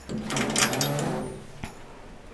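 Door of a large DIY iguana enclosure being opened by hand: a rasping scrape lasting about a second, then a single click.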